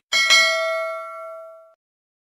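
A bell-like ding sound effect for a notification bell: two quick strikes that ring on and fade, then cut off suddenly about a second and a half in.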